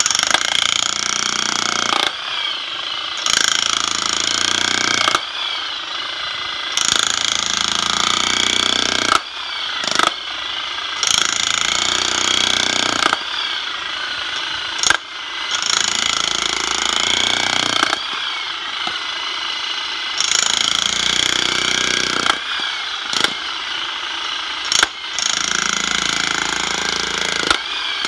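Corded Makita 27 lb electric jackhammer with a spade bit hammering into soft soil full of small rocks. It goes in loud runs of about two seconds, each followed by a quieter stretch, with a few sharp knocks in between.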